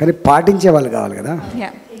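Speech only: a person talking into a microphone, with no other sound to be heard.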